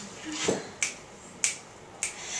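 Two sharp finger snaps, a little over half a second apart, setting the tempo before an a cappella song. A softer sound comes about half a second in.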